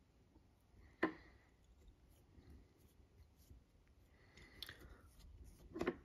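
Faint rustling of fingers rolling synthetic dubbing onto the tying thread, with one sharp click about a second in.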